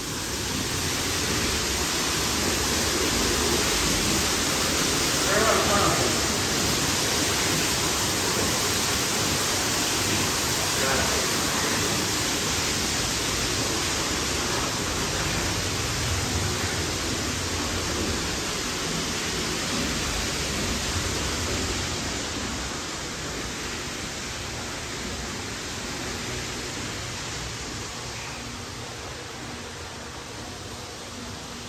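Steady rushing noise, like wind or running water, filling a mock glacier ice tunnel; it swells within the first few seconds and fades gradually over the last third as the tunnel is left behind.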